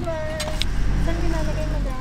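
Restaurant table ambience: faint voices over a low steady rumble, with a light clink about half a second in as a plate is set down on the table.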